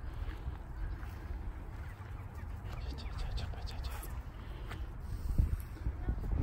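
Wind rumbling on a handheld phone microphone, with soft footsteps on grass and a couple of heavier thumps near the end as the pace picks up.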